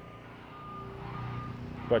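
A construction vehicle's reversing alarm sounding short, steady, high-pitched beeps, a little under two a second, over the low running of a heavy engine.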